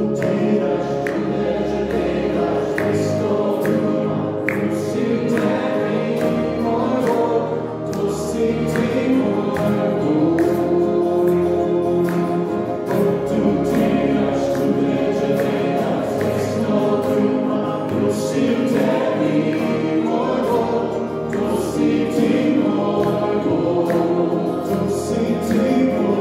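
A small worship band: several voices singing together in Slovenian over two strummed acoustic guitars and an electric keyboard.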